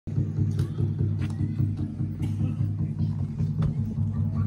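Water drums, metal pots with a head stretched over them, beaten in a steady fast rhythm of low beats, about four a second.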